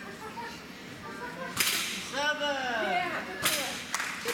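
Two sharp cracks about two seconds apart. Between them, a high, excited voice gives a few rising-and-falling calls.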